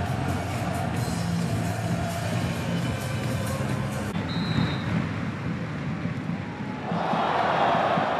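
Background music, which cuts off about halfway through. Football stadium crowd noise follows and swells into a louder roar near the end.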